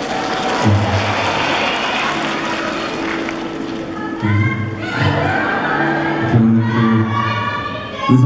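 Soft background music with long held low notes playing through a concert hall's sound system, under a haze of audience noise. There are brief rising calls from the crowd about halfway through and again near the end.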